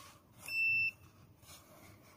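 A single short electronic beep from the 7-inch fish camera monitor, one steady high tone lasting under half a second, about half a second in. A faint click follows as its buttons are pressed.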